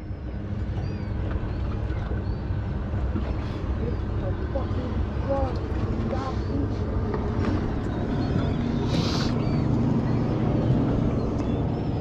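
Boat motor idling with a steady low rumble, and a brief hiss about nine seconds in.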